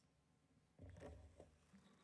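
Near silence, with one brief soft handling noise about a second in as hands settle on a kora.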